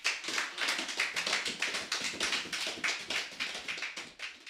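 Congregation applauding: many hands clapping in a dense, irregular patter.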